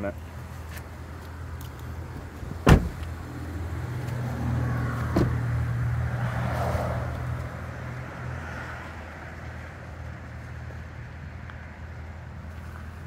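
An SUV door shut with one loud thump about three seconds in, followed by a lighter click a couple of seconds later, over a steady low hum.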